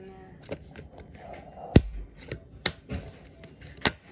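Hard plastic clicks and knocks from the side panel of a collapsible plastic crate being pushed against its snap latch, about six sharp strokes with the loudest a little before halfway; the panel is resisting and has not yet seated.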